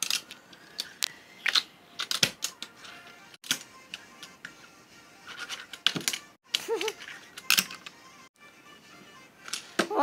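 Toy fingerboard clicking and clattering on a windowsill as tricks are done with fingers: a string of sharp taps and scrapes of the small deck and wheels against the sill, irregular with short pauses, with a grind along the sill near the end.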